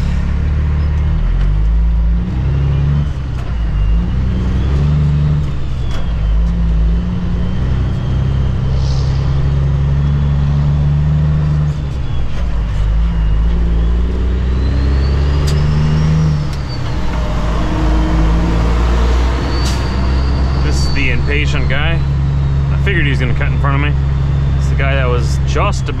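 Cummins ISX diesel of a 2008 Kenworth W900L heard from inside the cab, pulling away and accelerating through the gears, its pitch climbing and then dropping at each of several shifts. A fainter whine rises and falls above the engine.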